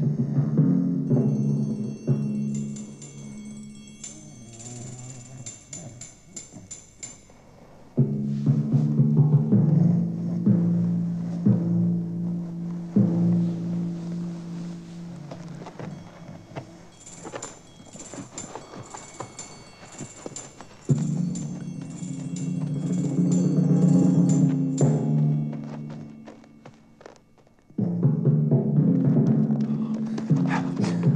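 Suspense background music: low drum or timpani rolls under a low sustained line that comes in loud and suddenly about eight seconds in, again near the middle, and near the end. High tinkling notes repeat above it twice.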